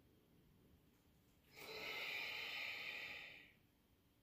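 A person breathing out audibly through the mouth in one long exhale, starting about a second and a half in and lasting about two seconds. The breath is paced to a yoga movement, shifting back from a low lunge.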